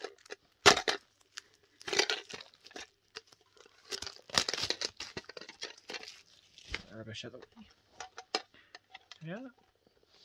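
Clear plastic shrink-wrap being torn and peeled off a collector's tin, crinkling and tearing in several separate bursts. The loudest bursts come just under a second in, at about two seconds, and around four to five seconds in.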